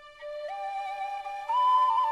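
Orchestral soundtrack music: a flute melody enters over a held note about a quarter second in, climbing in steps and growing louder near the end.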